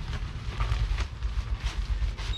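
Uneven low rumble of handling or wind noise on the microphone, with light rustling as the nylon backpack and its rain cover are handled.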